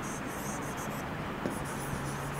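A pen writing on the glass screen of an interactive whiteboard: a light, continuous scratching and rubbing of handwriting strokes, with one small tap about a second and a half in.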